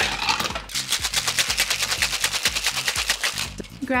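Cocktail shaken hard in a stainless steel two-tin shaker: a knock as the tins are sealed together, then a rapid, even rattle of ice against the metal for about three seconds, stopping just before the end.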